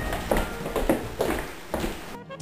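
Quick footsteps of several people on a hardwood floor, sharp knocks at about three steps a second.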